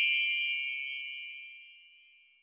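The ringing tail of a single bright, bell-like ding sound effect that fades steadily away, dying out near the end.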